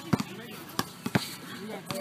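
Basketball bouncing on a hard outdoor court: four or five sharp, irregularly spaced thuds.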